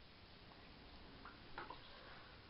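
Near silence: room tone, with a couple of faint small ticks about a second and a half in.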